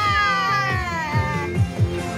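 An infant crying: one long wail that falls in pitch and fades out about a second and a half in, over background music with a steady beat.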